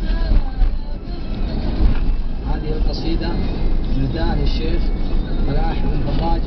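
Steady low road and engine rumble of a car driving, heard from inside the cabin. Over it a singing voice breaks off about a second in, and a voice comes back from about two and a half seconds on.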